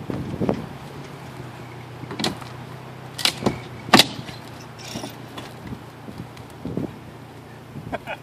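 Sharp knocks and thuds, about five spread out, the two loudest close together in the middle, as a small travel trailer is shoved by hand over boards and rough ground. A steady low hum runs underneath for the first half.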